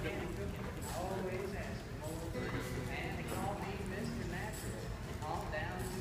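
Hoofbeats of several ridden horses moving over the soft dirt of an arena floor, with people talking at the same time.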